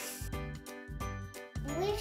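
A short tinkling chime jingle of several quick struck notes, the kind of sound effect that marks an object sinking. Near the end a child's voice starts to rise.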